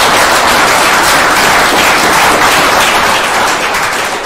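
Audience applauding steadily, a dense sound of many hands clapping that begins to die down near the end.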